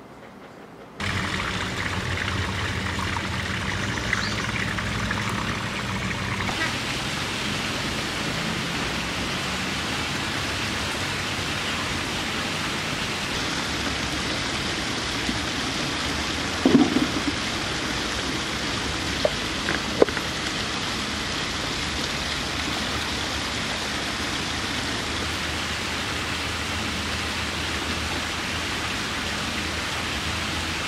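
Steady rush of water falling down an artificial rock cascade, starting abruptly about a second in, with a few brief knocks around the middle.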